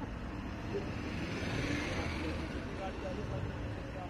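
Road traffic noise from cars idling and creeping forward in a queue, a steady engine rumble that swells a little about halfway through, with indistinct voices in the background.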